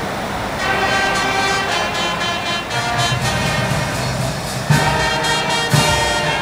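Brass band playing sustained notes, with low drum strokes about once a second in the last second or so.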